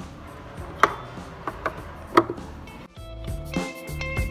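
Four sharp clicks from a Phillips screwdriver working the adjustment screw of a metal cabinet lid stay arm, the first and last loudest, over background music. The music grows fuller with clear sustained notes about three seconds in.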